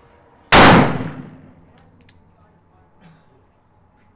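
A single shot from a .44-calibre 1847 Colt Walker black-powder revolver, loaded with 40 grains of powder behind a conical bullet, about half a second in; the report dies away over about a second. A few faint clicks follow.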